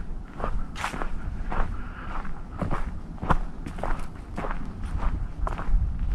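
Footsteps of a hiker walking along a forest trail at a steady pace, about two steps a second.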